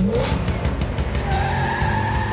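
Cartoon sound effect of a car revving up and pulling away, with a steady tire squeal coming in just past halfway, over background music.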